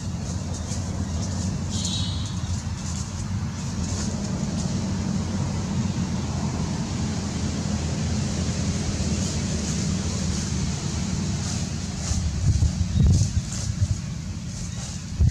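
Steady low outdoor rumble, with a few louder low thumps near the end.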